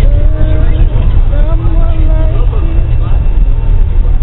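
Voices singing a gospel song unaccompanied, with held notes that slide from pitch to pitch, over the steady low rumble of a moving bus.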